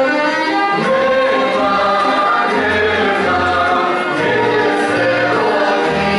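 Macedonian folk song: several voices singing a melody together over instrumental accompaniment, playing steadily throughout.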